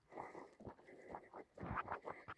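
Faint scuffing and rustling of footsteps on dry, leaf-littered ground, a few soft short scuffs.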